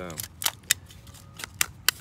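Esbit folding pocket stove's metal panels clicking as they are folded shut: several sharp, separate metal clicks.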